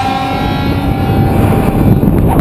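Wind rushing and buffeting over the camera microphone during a tandem parachute descent, loud and rumbling. Rock music fades out in the first half second.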